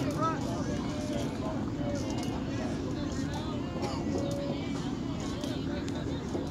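Scattered distant voices of spectators and players talking and calling out, over a steady low outdoor background noise.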